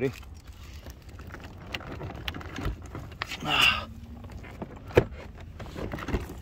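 Car door trim panel being pulled away from the door, with scattered clicks and a sharp snap about five seconds in as its plastic retaining clips let go.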